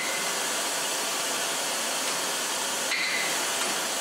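Oxy-acetylene rosebud heating torch burning with a steady hiss.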